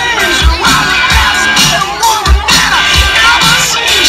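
A crowd shouting and cheering over music with a steady beat.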